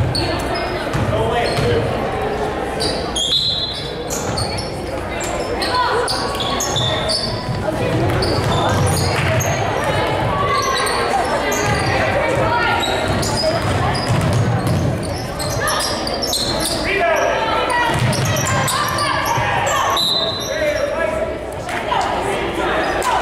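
Basketball game sounds in an echoing gym: a ball dribbling and bouncing on the hardwood floor, sneakers squeaking in short high chirps, and players and spectators calling out throughout.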